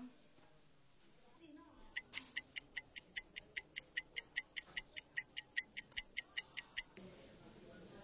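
Fast, even clock-like ticking, about five or six ticks a second, starting about two seconds in and stopping about five seconds later: a ticking sound effect marking time passing while someone waits.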